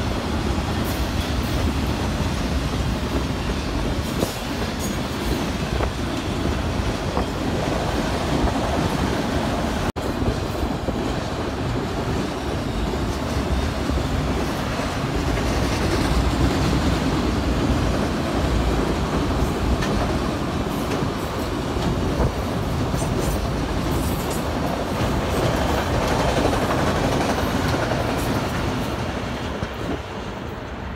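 Freight train of auto rack cars rolling past at close range: a steady noise of steel wheels on the rails, with a brief break about ten seconds in.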